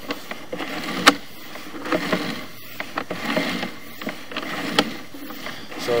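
Sewer inspection camera's push cable being pulled back out of the line, with a rubbing noise and scattered clicks and knocks from the cable and its reel. The sharpest knock comes about a second in.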